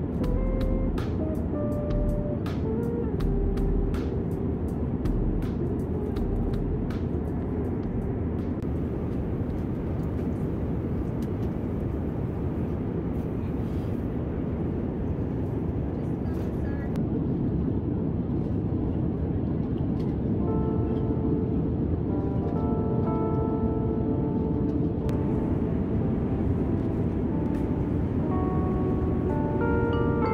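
Steady low drone of an airliner cabin in flight, under light background music. A run of sharp clicks comes in the first several seconds, and short melody notes come in more thickly from about twenty seconds in.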